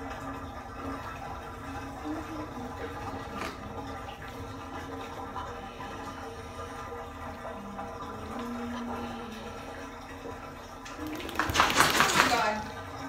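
Low, steady water sounds in a bathtub as a wet American bully is washed. Near the end there is a loud, brief burst as the dog shakes its head.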